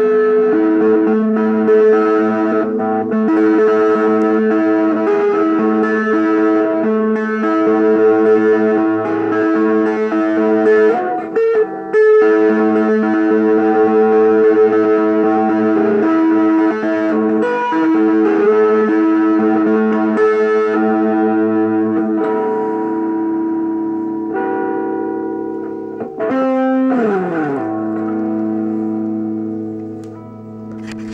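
Fender Telecaster electric guitar played solo, with sustained notes and chords ringing into one another. Near the end a note slides down in pitch, then a final chord rings out and slowly fades.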